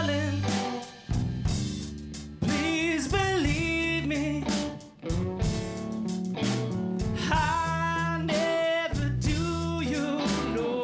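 Live rock band playing: electric guitars, bass and drums with a male vocal. The sound jumps abruptly a few times, about one and two and a half seconds in and again near five seconds.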